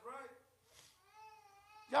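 A faint, drawn-out human voice: a short falling sound at the start and a longer held tone about a second in. A spoken word follows at the very end.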